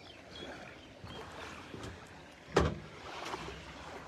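Footsteps on a floating walkway of plastic dock cubes, with one loud thump about two and a half seconds in and a few lighter knocks, over water lapping at the floats.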